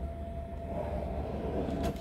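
Steady low rumble with a faint steady hum in the background, under light rustling and a soft click near the end as a hand moves toward a wooden cabinet drawer.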